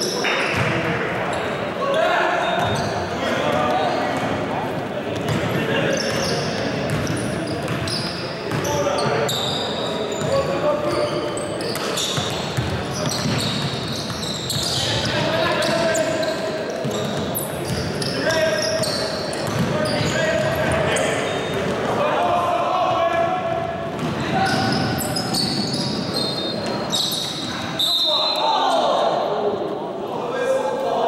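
An indoor basketball game: the ball bouncing on the hardwood court amid players' shouted voices, all echoing in the large gym.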